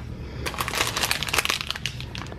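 Clear plastic packaging bag crinkling as it is picked up and handled, a run of crackles starting about half a second in.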